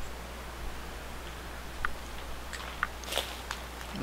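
A few crunching footsteps on dry grass and leaves, short crackles coming more often in the second half, over a steady low rumble.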